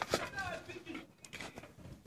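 A faint voice in the background early on, then quiet with a few light taps.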